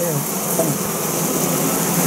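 Steady drone of a large mass of honey bees buzzing in a screened bee-vac box, with single bees' buzzes rising and falling over it.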